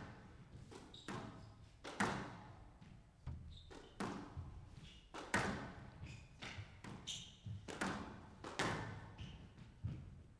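Squash rally: the rubber ball is struck by rackets and smacks off the court walls, a sharp crack about every second, with sneakers squeaking on the court floor between shots.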